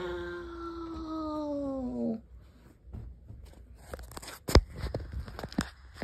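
A voice holds one long wail whose pitch slides steadily down for about two seconds, then breaks off. After a quieter stretch come a few sharp knocks and rustles of handling.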